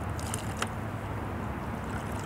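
Steady low outdoor noise on the river, with a few short, sharp splashy clicks about half a second in as a hooked smallmouth bass is handled at the water's surface beside the kayak.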